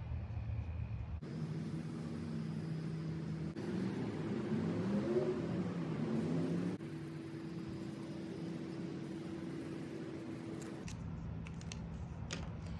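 A low, steady engine-like hum holding a couple of steady tones, with its pitch rising and falling for a couple of seconds in the middle. The sound shifts abruptly at a few points.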